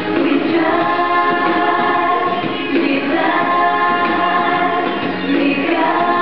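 A group of voices singing a vacation Bible school worship song together, with no break.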